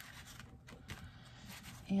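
Faint rustling and rubbing of a sheet of scrapbook paper as it is laid down and smoothed flat by hand, with a few soft brief touches.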